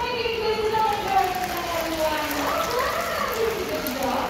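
A parrot held up to a microphone vocalizing in drawn-out, speech-like calls that slide up and down in pitch, with a rising-and-falling call a little past halfway.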